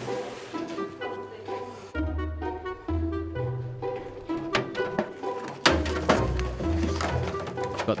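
Background music of plucked and bowed strings over short, repeated low bass notes.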